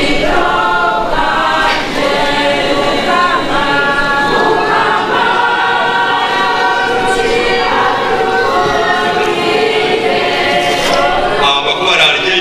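A choir of many voices singing together, continuing through the whole stretch.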